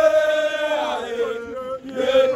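A group of people chanting together in unison, holding one long note that fades out after about a second and a half before the next phrase begins.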